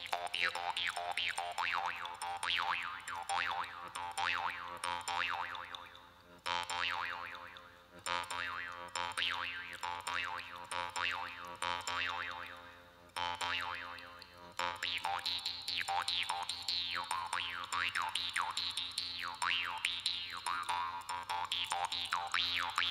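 Jaw harp played in a solo piece: rapid plucks over a steady drone, the mouth shaping the twang into overtone melodies that sweep up and down. The playing breaks off briefly a few times in the middle, then runs on steadily.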